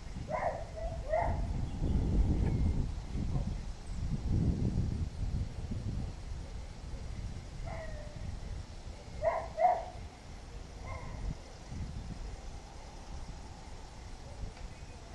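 Short animal calls, a quick pair near the start and another pair about nine seconds in, with single calls between, over a low rumble of wind on the microphone.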